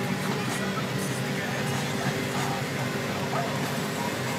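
Steady drone of road and engine noise inside a moving car's cabin, an even hum without breaks.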